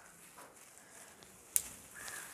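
Faint rustling of leafy shrub branches as leaves are plucked by hand, with a single sharp click about one and a half seconds in.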